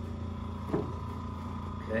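A steady low hum, with a few faint steady tones above it, runs under two brief spoken words. No joint crack is heard.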